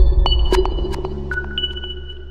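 Electronic station ident jingle: a deep bass tone, loudest at the start and slowly fading, under several high pinging notes that each begin with a soft click and ring on.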